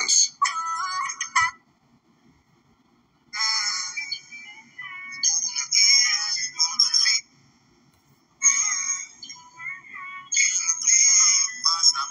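Snippets of a dancehall song with vocals, thin-sounding with almost no bass. It cuts out twice for a second or two of near silence, once early on and once about two-thirds of the way through.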